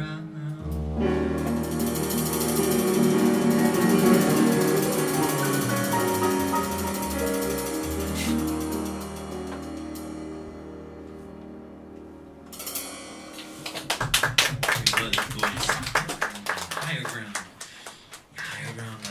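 Jazz band of piano, double bass and drums holding a big final chord under a cymbal roll, which swells and then fades away over several seconds. Audience applause starts about 13 seconds in.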